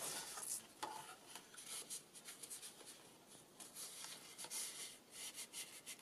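Faint rustling and scraping of card stock and paper as a card is slid into a pocket of a handmade paper folio, in a run of short, uneven strokes.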